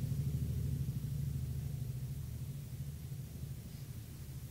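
Low, steady mechanical rumble with a hum, slowly fading away.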